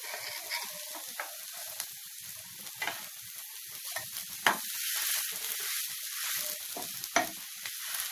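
Bread toast frying in a hot pan, sizzling steadily, with a few sharp clicks from a spatula against the pan.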